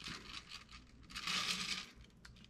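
A faint rustle, with one short patch of it in the second half.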